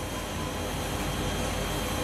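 Steady room background noise between words: an even hiss over a low hum, with a faint steady high-pitched tone.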